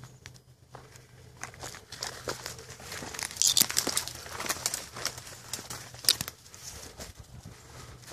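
Footsteps crunching through dry leaf litter while twigs and brush scrape and snap against the walker, a run of crackles that grows about a second and a half in and is loudest about three and a half seconds in and again at about six seconds.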